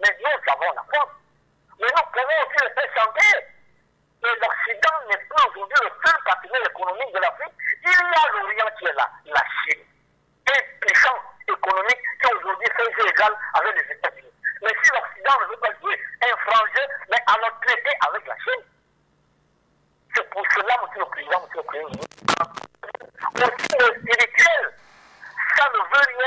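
Speech over a telephone line: a caller's voice, thin and narrow in tone, talking in runs of phrases with short pauses between them.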